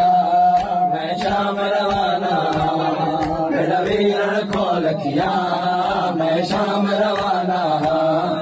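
A group of men chanting a noha, a Shia mourning lament, together through handheld microphones and a loudspeaker. The chant is punctuated by sharp slaps of chest-beating (matam) roughly once a second.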